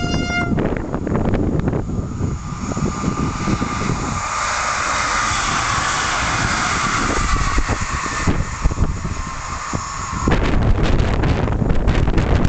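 Electric multiple unit's two-tone horn ending about half a second in, then the train passing at speed with a steady rush of wheel and rail noise. Near the end this gives way suddenly to wind buffeting the microphone.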